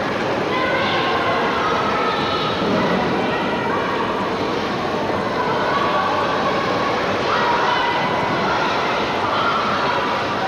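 Steady din of an indoor ice rink: voices echoing, with drawn-out calls rising and falling over a constant noisy background.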